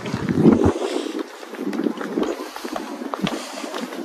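Wind buffeting the microphone, heaviest in the first second and then a steadier rush.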